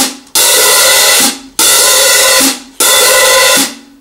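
Hi-hat cymbals played hard with a drumstick in a jazz swing pattern, very loud. The hats ring for about a second at a time, three times, with short breaks between.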